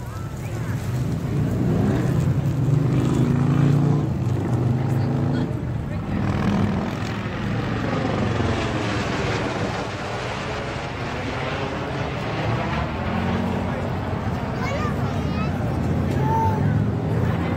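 Helicopter flying overhead, its rotor and engine noise swelling over the first few seconds and then holding loud and steady, with a slow sweeping, phasing tone as it passes above.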